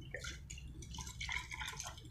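Evaporated milk poured from a bowl into beaten eggs: a faint stream of liquid splashing and dripping into the mixture.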